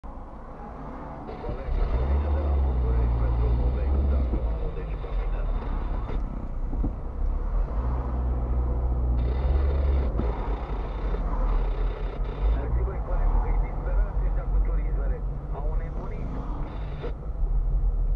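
Car engine and road rumble heard inside the cabin while driving in slow traffic, the low rumble swelling twice, with indistinct talking over it.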